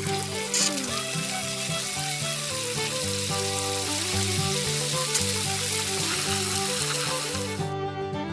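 Water spray from a toy shower head, a steady hiss added as a sound effect to an animated splash. It cuts off suddenly near the end, and background music plays underneath.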